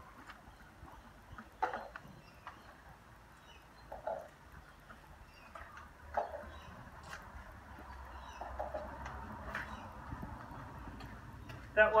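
Faint footsteps on a wet concrete path with a few scattered light taps as plastic cups are set down on the ground.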